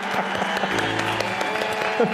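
Studio audience applauding over a short piece of game-show music with held notes.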